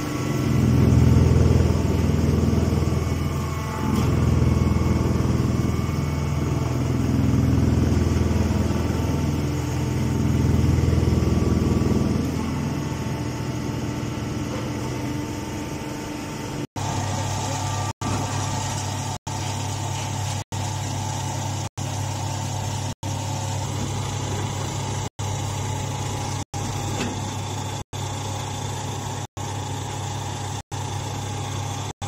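Hydraulic baler's electric motor and pump running with a loud low hum that swells and eases several times. After about seventeen seconds it gives way to a steadier motor hum, broken by brief gaps in the sound about every second and a half.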